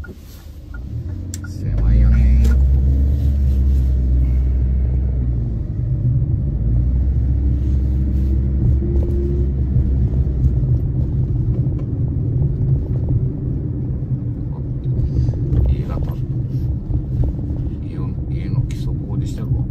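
Car engine and road rumble heard from inside the cabin as the car pulls away and drives on: a low, steady rumble that comes in about two seconds in, with the engine note rising around the middle as it picks up speed.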